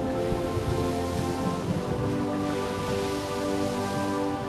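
Animation soundtrack music of held chords, with a steady hiss of rain-like storm noise over it that grows a little in the second half.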